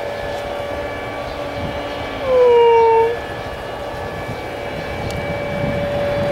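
Airbus A321-211's CFM56 jet engines running at taxi power: a steady whine over a broad rush. About two seconds in, a louder separate tone sounds for just under a second, sliding slightly down in pitch.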